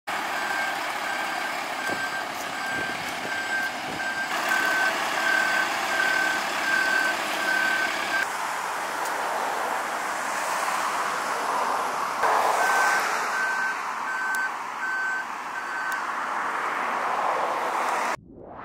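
A truck's reversing alarm beeping steadily, a little faster than once a second, over continuous background noise; the beeping stops about eight seconds in and starts again later.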